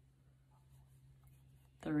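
Faint rustling and scratching of acrylic yarn being worked with a 5 mm crochet hook, over a low steady hum; a woman's voice begins near the end.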